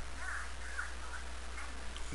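Low steady hum and hiss under a pause in speech, with a few faint short calls in the first second.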